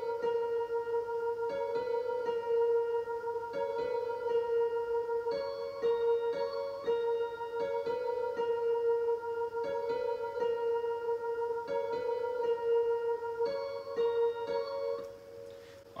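Playback of a piano melody over a sustained synth note underneath it, with reverb. A short phrase repeats about every two seconds, and the music dies away just before the end.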